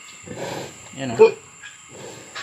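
Sow grunting twice, a rough grunt about half a second in and a louder, sharper grunt just past a second.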